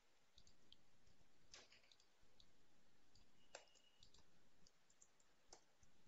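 Near silence with a few faint computer clicks, three of them clearer and about two seconds apart.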